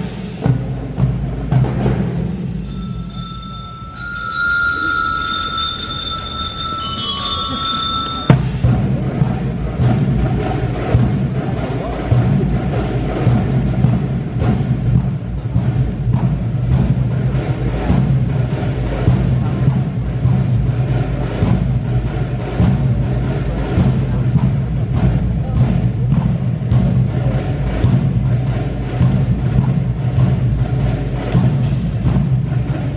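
Military drum line playing a steady marching cadence on marching drums. A few seconds in, high steady tones are held for about five seconds over lighter drumming, then the drumming comes in fuller and louder from about eight seconds on.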